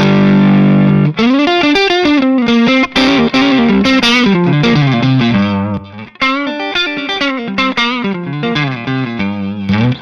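Red S-style electric guitar with Klein S1 single-coil pickups played through a BearFoot Sea Blue EQ treble/bass booster, both tone controls boosted, into a Palmer DREI amp. A chord rings for about a second, then a single-note lead line with bends and vibrato follows. The pedal is switched out briefly near the middle and back in, for comparison.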